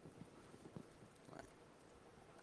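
Near silence with a few faint, irregular laptop keyboard taps as commands are typed.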